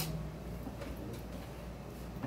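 Trading cards being handled and set down on a playmat: a sharper click right at the start, then a few faint ticks, over a steady low room hum.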